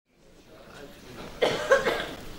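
A man coughing twice into a microphone, about a second and a half in, after faint room noise fades in.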